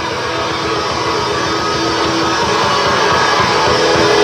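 Hard rock band playing live, electric guitar to the fore, the music gradually growing louder.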